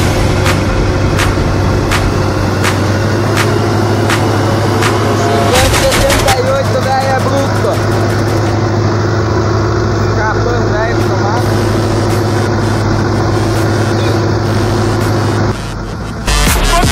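John Deere tractor engine running with a steady drone while it pulls a corn planter. A regular tick runs through the first five seconds, and a wavering voice-like sound comes twice in the middle.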